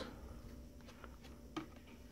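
Faint handling of glossy chrome baseball cards: a few soft clicks and light rustling as cards are slid through a stack in the hand, with one slightly louder click about one and a half seconds in.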